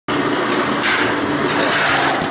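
A machine running loudly: a steady, noisy whir with a low hum, starting abruptly at the very start.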